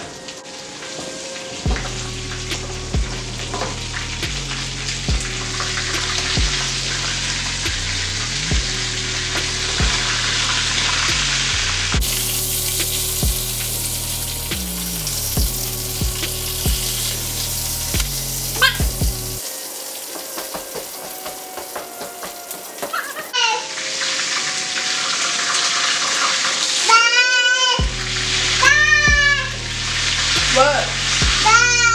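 Burger patties sizzling in a hot frying pan while a spatula works them, with a steady hiss. Background music with a heavy stepping bass line plays over it; the bass drops out for several seconds past the middle, and vocals come in near the end.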